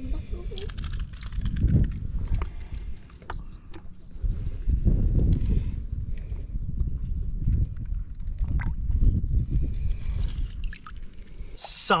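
Wind buffeting the microphone in uneven gusts, with a few faint clicks.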